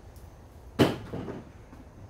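A single sharp plastic clunk about a second in as Hart plastic small-parts organizer cases are set down on a tabletop, followed by a couple of lighter knocks.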